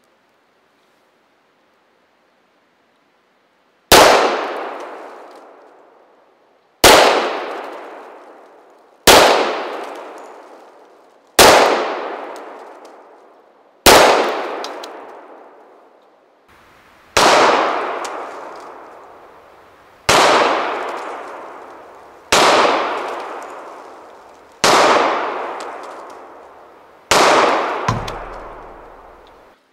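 Ten pistol shots fired one at a time, two to three seconds apart, each ringing out with a long echo through the woods. The first five are louder; the last five, starting about 17 seconds in, are somewhat quieter.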